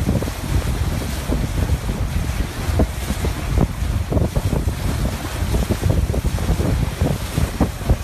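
Wind buffeting a phone's microphone in heavy low gusts over the rush of a boat's bow wave breaking along the hull.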